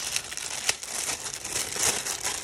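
Clear plastic packaging bag crinkling as it is handled and lifted, with one sharp click under a second in.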